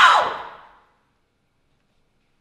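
A loud commotion of shouting voices and instruments dies away within the first half second, then complete silence.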